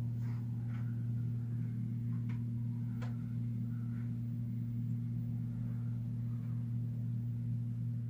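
A steady low electrical hum, with a couple of faint clicks about two and three seconds in.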